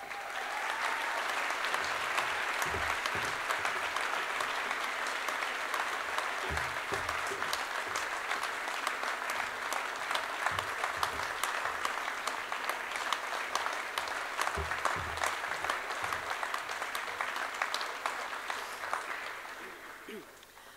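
A large audience applauding, many hands clapping in a steady, dense patter that tails off just before the end.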